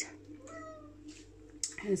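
A domestic cat meowing once, a short, faint call of about half a second that falls slightly in pitch, about half a second in.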